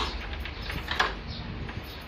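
Two sharp metallic clicks about a second apart from a deadbolt lock's hardware being handled on a wooden door.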